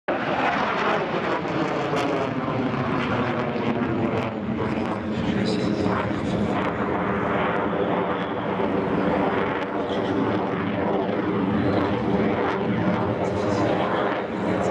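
A Dassault Rafale fighter's twin Snecma M88 turbofan jet engines running in flight overhead. The jet noise is loud and steady, with slowly sweeping bands in the tone as the aircraft moves.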